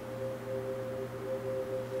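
Background score music: a soft chord of steady held tones that comes in at the start and sustains.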